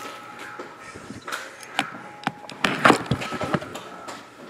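Hands opening a Panini Plates & Patches trading-card box: a handful of short knocks and scrapes as the box is handled and its lid lifted.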